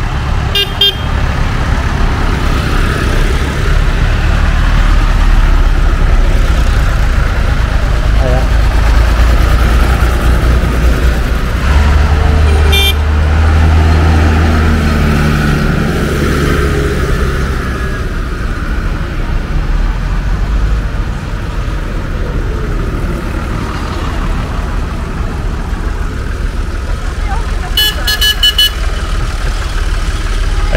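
Tractor engines running as a line of tractors drives past, one passing close and louder about halfway through. Short horn toots sound near the start, again about halfway, and as a quick series of beeps near the end.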